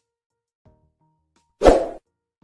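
Faint background music, then a single loud, sudden pop sound effect about one and a half seconds in that dies away within half a second, as the animated subscribe graphic comes up.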